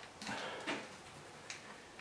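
Sponge roller smudged and dragged across a painted acrylic canvas: a few faint soft scuffs, with a brief click about one and a half seconds in.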